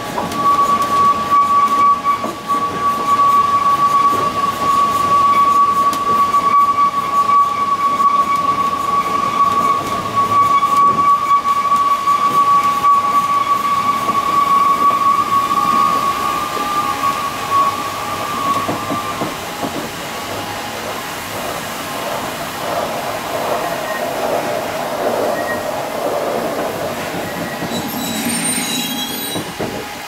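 Narrow-gauge railway carriage wheels squealing with one steady high tone as the train moves slowly along the platform. The squeal fades out after about 19 seconds, leaving the rumble and clatter of the wheels on the track.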